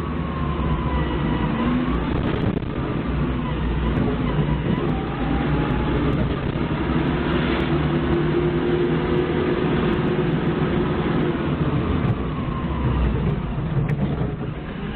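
Doosan 4.5-ton forklift's engine running steadily under way as the forklift drives along a road, heard from the cab.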